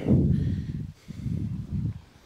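Wind buffeting the microphone: a low rumble that dies away about a second in, then a second, shorter gust.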